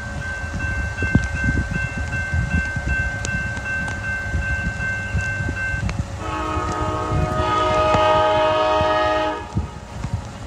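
Locomotive air horn from an approaching train, not yet in sight: one long steady blast lasting about six seconds, then after a short break a second, fuller and louder blast of about three seconds. A low rumble runs underneath throughout.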